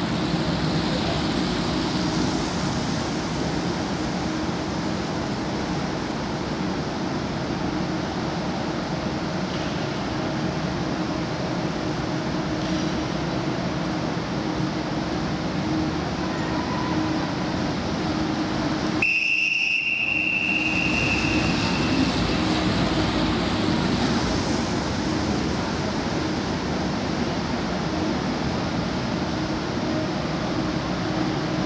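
Steady noise of a bunch of track bikes circling a velodrome's wooden boards in the big hall. About two-thirds of the way through, the lap bell rings once with a clear ringing tone that fades over a few seconds, marking the next lap as a sprint lap.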